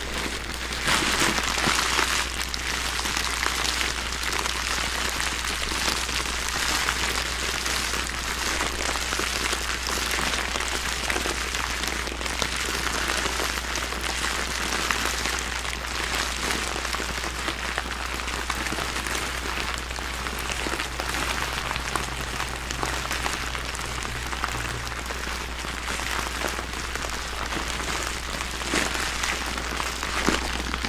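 A clear plastic bag full of small shiny pink pieces being squeezed and kneaded by fursuit paws close to the microphones: continuous dense crinkling and rattling, a little louder about one to two seconds in.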